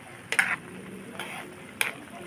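Spatula stirring squid in adobo sauce in a pan, knocking against the pan a few times, loudest about half a second in and again near the end, over the steady sizzle of the sauce.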